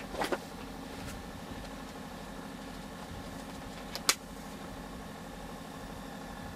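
Steady mechanical hum inside a truck cab, with a short click just after the start and a sharper, louder click about four seconds in.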